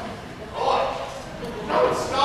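An actor's voice on stage: two short vocal outbursts, one about half a second in and one near the end, picked up from a distance in the hall.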